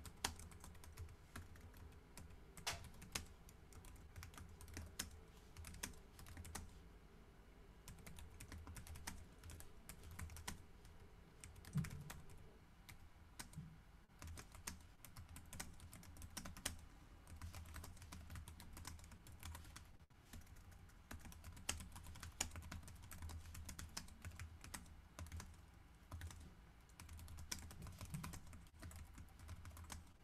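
Faint computer-keyboard typing: irregular keystroke clicks in uneven runs over a low hum, picked up by an open video-call microphone.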